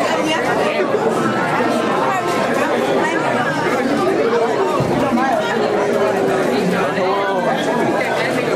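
A crowd of teenagers talking over one another: steady overlapping chatter from the group gathered around the game.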